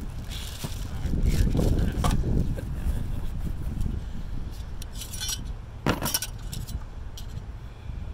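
Metal solar-panel mounting bracket pieces clinking and clattering as they are handled and laid on a cardboard box, a few sharp clinks. Wind rumbling on the microphone.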